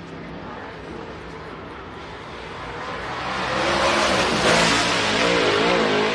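Dirt super late model race car's V8 engine running at speed on the clay oval. It grows much louder from about three seconds in as the car accelerates and comes nearer, its pitch rising and falling with the throttle.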